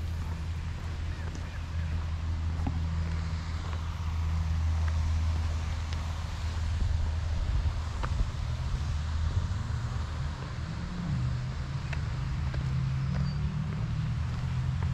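Steady low rumble of road traffic, its pitch shifting a little as vehicles pass, with a few faint ticks.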